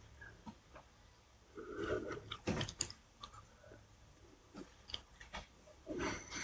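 Faint, irregular crackling and popping of a flour-coated chicken drumstick deep-frying in oil in a kadai, with a short run of louder pops about two to three seconds in.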